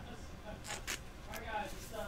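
Faint rustle and a few light clicks of a trading card being handled and slid against a clear plastic sleeve.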